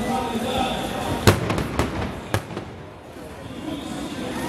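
Three sharp bangs about half a second apart, the first the loudest, over the voices of a large outdoor crowd.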